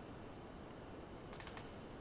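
A short run of about four quick computer clicks, mouse or keys, about one and a half seconds in, over faint room hiss.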